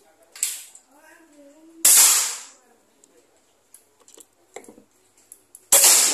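Two shots from a suppressed Marauder PCP air rifle, about two seconds in and again near the end, each a sudden sharp report with a short fading tail.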